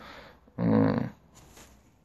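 A man's short, low, throaty vocal sound lasting about half a second, a hesitation grunt while he pauses for thought mid-sentence.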